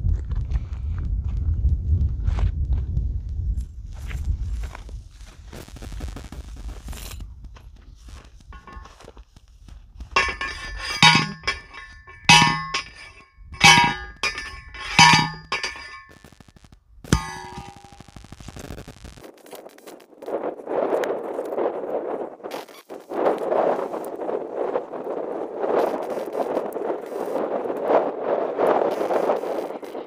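A hand-held steel post driver slammed down onto a steel T-post about five times, each strike a ringing metallic clang roughly a second and a half apart. A low rumble comes before the strikes, and a steady rushing noise follows them.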